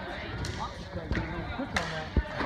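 A volleyball being struck during a rally in a gym: two sharp smacks a little over a second apart, over indistinct voices of players and spectators.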